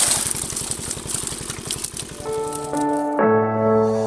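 A small engine running with a fast, even chug and rattling noise over it, which cuts off abruptly about three seconds in as an intro music jingle takes over.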